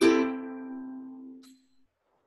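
A single ukulele chord strummed once, ringing out and fading away over about a second and a half.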